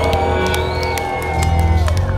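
A rock band playing live through a club PA: long held notes that bend in pitch over a steady low bass, with short percussion hits.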